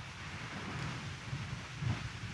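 A congregation getting to its feet: a soft, even rustle of clothing and shuffling, with scattered low knocks and rumbles.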